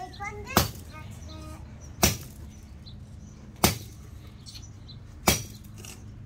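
A pelu, a Samoan machete, chopping into the trunk of a small tree: four sharp blade strikes into wood, evenly spaced about a second and a half apart.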